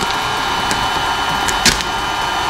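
Electric heat gun running steadily on a low setting, a constant blowing hiss with a faint whine, aimed at carbon-fibre vinyl wrap film. A few short crackles come from the film as it is pressed and stretched by hand, the sharpest near the end.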